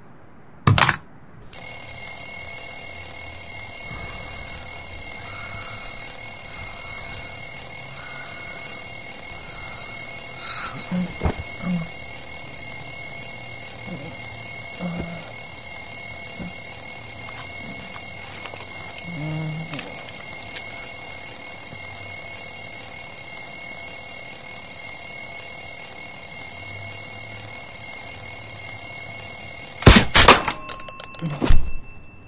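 Twin-bell mechanical alarm clock ringing loudly and without a break from about a second and a half in. The ringing is preceded by a short click.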